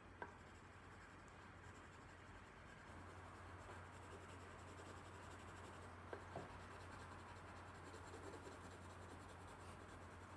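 Colored pencil rubbing softly over paper in short, steady shading strokes as fur is blended. There is a light tap just after the start and two more about six seconds in.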